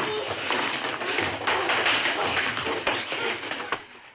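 Physical scuffle: a dense, rapid run of taps, knocks and thumps from feet, chairs and the table, dying away just before the end.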